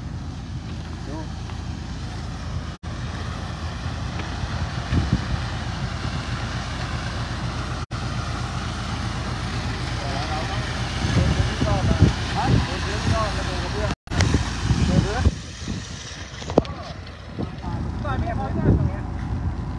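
Ready-mix concrete truck running steadily with its drum turning, as wet concrete slides down the chute into a column footing form. The sound drops out briefly three times, and voices talk in the second half.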